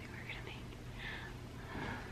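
A woman in labour breathing hard and whispering: three short breathy sounds with no voiced words, over a steady low hum.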